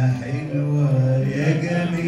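Music with a man's singing voice holding long, slowly changing notes.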